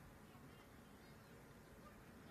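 Near silence: faint, steady outdoor ambience.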